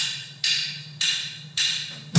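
Drummer's count-in: four sharp wooden clicks of drumsticks struck together, evenly spaced a little over half a second apart, setting the tempo for the band to come in.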